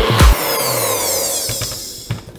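A last beat of electronic background music, then a NutriBullet blender's motor spinning down after the blend, a high whine falling in pitch and fading. A few clicks come near the end as the cup is lifted off the base.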